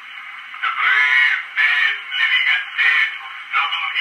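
A cylinder phonograph playing an early acoustic recording of a man reciting the Gettysburg Address through its horn; the voice is thin and nasal, with no bass and little treble, in the narrow range of an early acoustic recording. The voice starts after a short pause.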